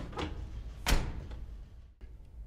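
A door shutting with a heavy thud about a second in, after a couple of lighter knocks, over a low steady hum.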